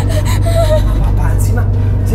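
A distressed woman's gasping breaths and short vocal cries, over a steady low drone of dramatic background music.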